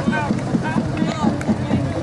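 People's voices talking outdoors over a steady rumble of wind on the microphone and traffic.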